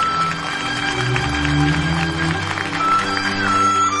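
Instrumental interlude of a Chinese song's accompaniment, with no singing: a high melody of held notes that slides from one pitch to the next over a steady lower accompaniment.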